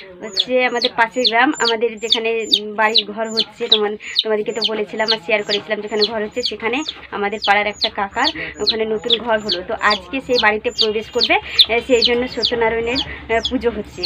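Chickens clucking and calling continuously, with a rapid string of short, high, downward chirps, about three a second.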